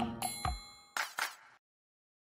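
The end of a short intro jingle: a bell-like ding rings out a quarter second in, two short sharp hits follow about a second in, and then the sound cuts off.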